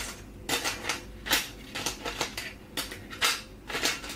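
Light, irregular clicks and rustles of hands handling things close to the microphone, about a dozen small taps and scrapes with no steady rhythm.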